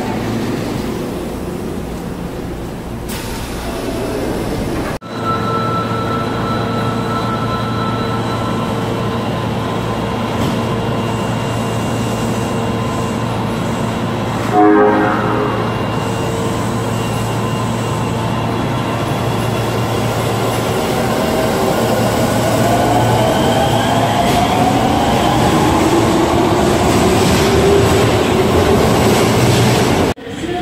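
Osaka Metro subway trains running at station platforms, with abrupt cuts between clips. In the second half, a Sennichimae Line 25 series train's motors give a rising whine as it gathers speed over the last several seconds.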